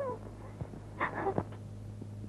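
A child's whimpering sobs: a short cry falling in pitch at the start, then two or three brief cries about a second in, over a steady low hum.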